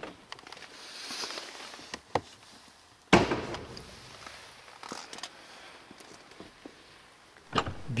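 Light clicks, then a sharp thunk about three seconds in as the bonnet release in the driver's footwell of a Mercedes-AMG E53 Coupe is pulled. Near the end the frameless soft-close door shuts.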